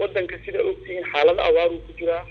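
Speech only: a voice talking in short phrases.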